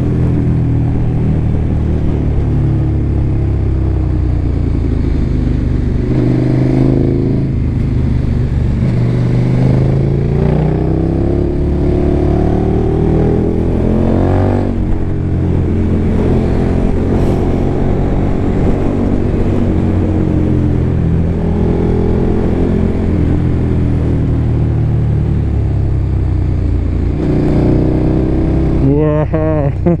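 KTM motorcycle engine heard from the rider's helmet microphone, pulling through the gears on a winding road: its pitch climbs in long sweeps and drops back at each shift or roll-off, with steadier running between.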